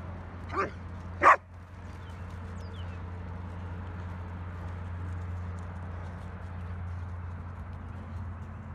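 A dog barks twice in quick succession within the first second and a half, the second bark much louder.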